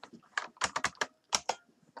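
Typing on a computer keyboard: a quick, uneven run of about a dozen keystrokes as an email address is entered into a form field.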